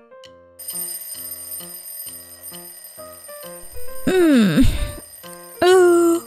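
A phone alarm ringtone starts about half a second in, with high ringing tones over light piano music. About four seconds in a voice gives a long waking groan that falls and then rises in pitch, and a short vocal sound follows near the end.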